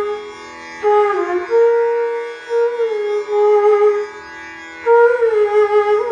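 Bansuri (bamboo flute) playing slow phrases of Raga Puriya Kalyan, holding notes and gliding smoothly between them, with two short breaks for breath about half a second and four seconds in. A faint steady drone continues underneath.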